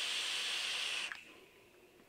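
Long draw through a vape atomizer on a box mod: a steady hiss of air and vapour pulled through the 0.12-ohm coil build, cutting off sharply about a second in.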